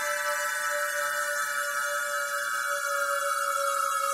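Background music of sustained electronic tones, a few of them sliding slowly down in pitch over one steady held note.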